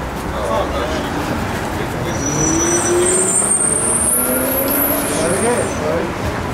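Street traffic: a motor vehicle drives past, its engine note rising, with a thin high-pitched whine from about two seconds in until near the end.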